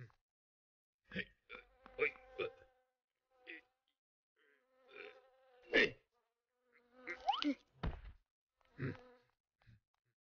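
Cartoon sound effect of flying insects buzzing in short, repeated spurts. A rising glide comes about seven seconds in, followed by a sharp knock.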